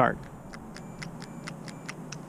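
A rapid, even run of faint small mechanical ticks, about seven a second.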